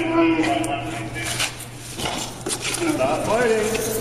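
Metal clinking and rattling from handcuffs and restraint gear as officers hold a man down in a chair, with a man's voice heard over it.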